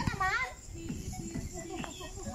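Women's voices during a group game: a short, high-pitched wavering shout right at the start, then quieter scattered talk.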